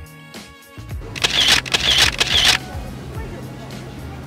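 Background music, with three camera-shutter sound effects in quick succession just over a second in, about half a second apart.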